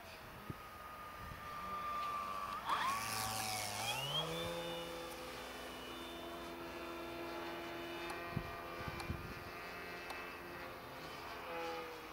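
Radio-controlled model airplane's engine running as it flies overhead, with a sharp drop in pitch about three seconds in, then climbing again and holding a steady note.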